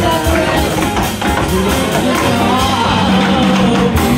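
Jazz big band playing live, with saxophones, trumpets, piano, guitar and drums, and a woman singing over the band.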